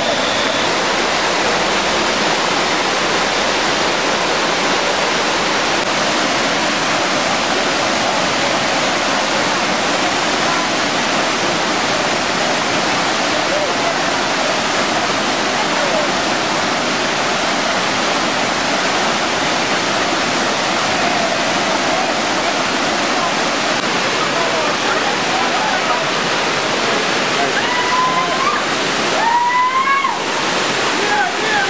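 Steady roar of a cascading waterfall, water rushing over rock ledges. Faint voices of people can be heard over the water in the second half.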